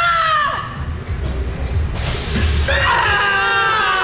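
A dark-ride car rumbling along its track, with a short burst of hiss about two seconds in, then a long, steady, held scream or wail starting about three seconds in.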